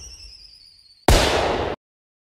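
Edited-in sound effect: a falling whistle that fades out, then about a second in a sudden blast-like burst that cuts off abruptly after about half a second.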